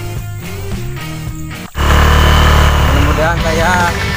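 Background music plays for nearly two seconds and is cut off abruptly. A loud, steady low rumble of a moving vehicle and wind noise follows, and a man's voice starts near the end.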